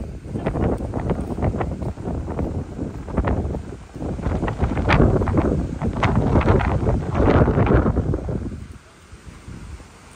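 Wind buffeting the microphone in loud, uneven gusts, easing off sharply about a second and a half before the end.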